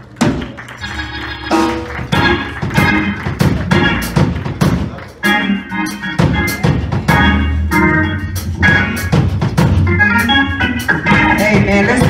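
Church band music: an organ playing chords over a regular drum beat and a low bass line.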